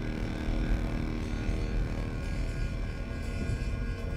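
Low, steady rumble of a car on the move, heard from inside the cabin, under quiet background music.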